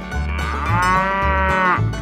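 A cow mooing: one long moo of about a second and a half, dropping in pitch at the end, over background music with a steady beat.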